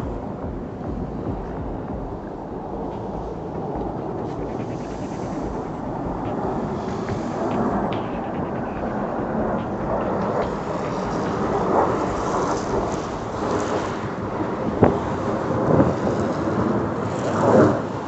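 Low, continuous jet rumble of a formation of military jets flying past overhead, slowly growing louder, with a few short knocks near the end.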